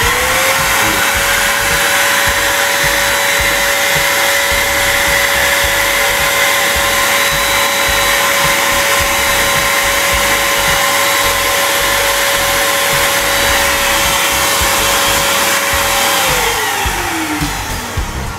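Bolde Super Hoover portable vacuum cleaner switched on, its motor quickly rising to a steady high whine, running with its hose connected at the rear so that it blows air out. Near the end it is switched off and the whine falls in pitch as the motor winds down.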